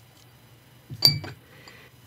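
Alvin Brass Bullet, a small solid-brass pencil sharpener, clinks once against a ceramic dish about a second in, with a short bright ring.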